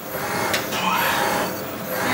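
Isokinetic dynamometer running as the leg drives its lever arm through knee extensions, a mechanical whir that swells and fades with each push.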